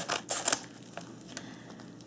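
Scissors snipping through the edge of a padded paper mailer: a few quick cuts in the first half second, then quiet.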